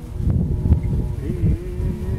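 Live acoustic guitar with a man's voice coming in a little past halfway on one long held sung note, under a heavy low rumble.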